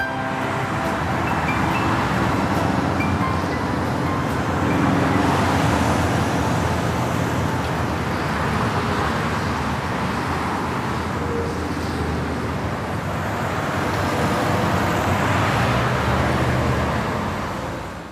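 City street traffic noise: a steady wash of passing road vehicles.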